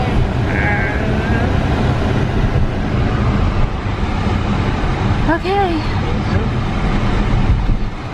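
Steady road and engine noise inside a moving car's cabin, with short voice-like sounds near the start and about five seconds in.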